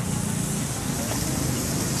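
Beef entrecôte searing in a hot pan with olive oil: a steady sizzle.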